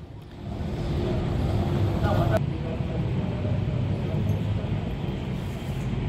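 Outdoor background noise: a steady low rumble like passing road traffic, with faint voices in the background.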